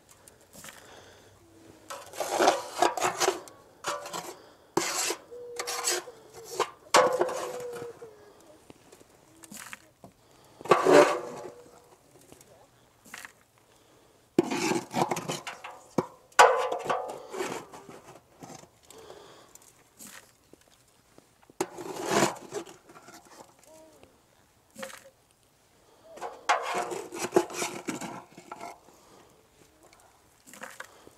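Small metal ash tool scraping and scooping clumped ash mixed with oil-dry absorbent across the floor of a steel Breeo fire pit. The scraping comes in repeated strokes of about a second each, with short pauses between.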